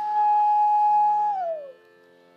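Bansuri holding one long, steady note, then sliding down in pitch (a meend) near the end and fading out. A faint steady drone sits underneath.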